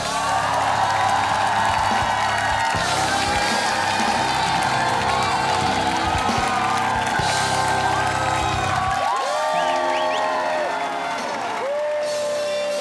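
A studio audience cheering, screaming and applauding over loud music, starting suddenly. The music's bass drops out about nine seconds in, leaving the cheering and a few rising whoops.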